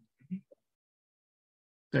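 A man's voice trailing off in a few short fragments, then about a second and a half of dead silence before he starts speaking again at the very end.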